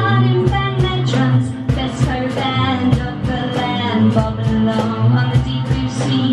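Instrumental break of a pop-rock sea shanty: electric guitar playing over a steady drum beat and bass line.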